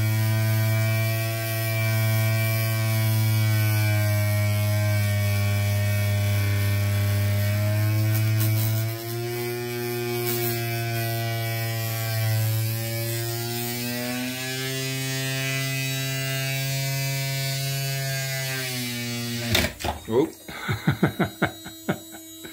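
Small electric motor of a toy flapper-paddle boat, spinning a magnet to drive the flapper, running with a steady buzzing drone whose pitch shifts a little now and then. It cuts out suddenly near the end, followed by a few clicks and knocks.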